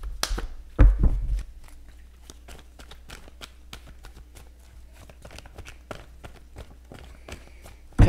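Tarot cards being shuffled by hand: a louder shuffle about a second in, then a long run of light, irregular card clicks.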